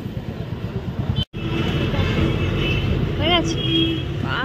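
Busy street ambience: many people talking with road traffic running underneath. The sound cuts out for an instant just over a second in.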